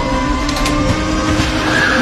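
Dense action-film sound mix: a loud, steady heavy rumble with sustained tones held over it.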